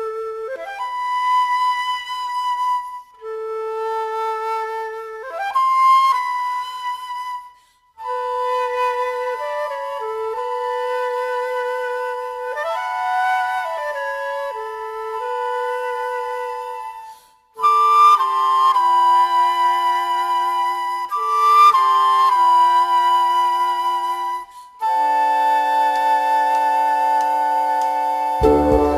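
Instrumental music: a flute-like woodwind melody in short phrases, some notes sliding up into pitch, joined by a second, lower woodwind part about eight seconds in. A deeper sustained note enters near the end.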